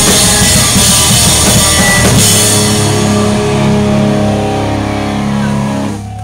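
Pop-punk band playing live through guitar amps and drums, with a singer on the microphone. About two seconds in the drums and cymbals stop and a held final chord rings on, dropping away right at the end as the song finishes.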